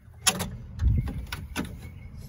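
Light clicks and knocks of the latch rod and plastic handle unit being handled inside a pickup truck's steel door, with one dull thump about a second in, as the rod is fitted into the new interior door handle.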